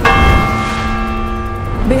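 A news-bulletin transition sting: a sudden bell-like strike over a deep low boom. Its ringing tones hold and slowly fade over nearly two seconds.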